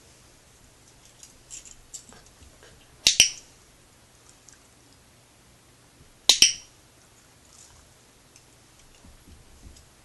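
Two sharp clattering knocks about three seconds apart, each a quick double strike, as a puppy paws at or bumps the phone lying on the carpet. Faint ticks from its movement come between them.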